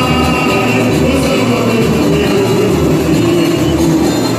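Live samba-enredo: several singers on microphones over a band, with a steady low beat about twice a second, amplified through stage speakers.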